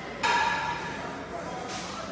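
A sudden metallic clang with a brief ringing tone about a quarter second in, from gym weight equipment being struck. A short hiss follows near the end.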